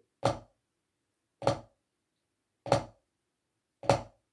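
Drum flams played with wooden drumsticks on a rubber practice pad: four short, dry strokes about 1.2 s apart. In each, the lower stick lands just ahead of the main stroke.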